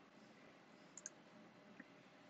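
Near silence: room tone, with one faint click about halfway through and a fainter one near the end.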